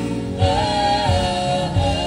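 Live gospel music: a group of women singers holding sustained harmonies over a band of keyboard, drums and electric guitar, with low beats at roughly two-thirds of a second apart.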